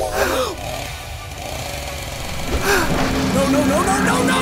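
Short wordless voice cries, once at the start and again near the end, over a steady low rumble, with background music coming in during the last second.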